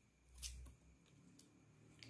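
Near silence, broken by a faint brief rustle of paper flashcards being handled about half a second in.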